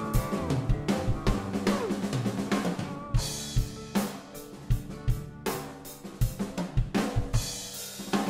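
Acoustic drum kit played along to a recorded band backing track. Kick and snare hits with cymbal crashes sound over the guitar and bass of the song.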